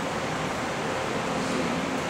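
Steady, even background hiss of room noise with no distinct events.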